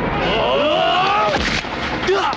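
Men shouting and yelling in a brawl, several long cries rising and falling in pitch over a loud rushing noise.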